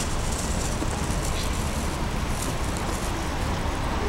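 Steady outdoor city background noise: an even hiss over a low rumble, with no distinct events.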